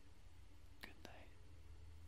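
Near silence: faint room tone with a low steady hum, and two faint clicks close together about a second in.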